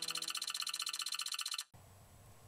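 Short electronic music sting: a fast, evenly repeating ticking pulse over a few held tones, cutting off suddenly near the end.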